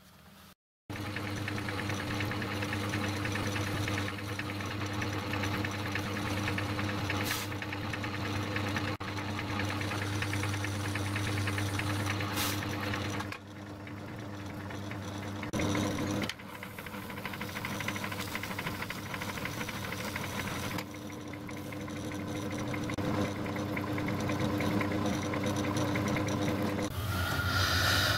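Metal lathe running with a steady motor hum while turning brass connecting-rod bearing blocks held in a four-jaw chuck. The level shifts a few times.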